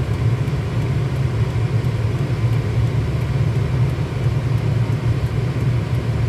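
A steady low engine rumble at idle, heard from inside a stopped car's cabin, with no change in pitch or level.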